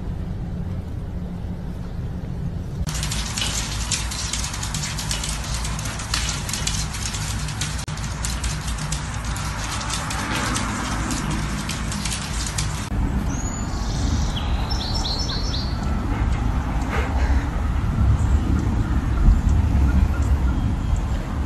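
Short bird chirps, a few quick high calls starting just after the middle, over a steady low hum. Before them comes a stretch of hiss with crackling.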